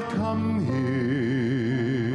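Male solo voice singing a slow gospel song with strong vibrato, over instrumental accompaniment.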